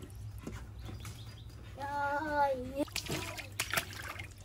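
Water sloshing and trickling in an inflatable paddling pool. About two seconds in, a single drawn-out voiced call lasts about a second and dips in pitch at the end.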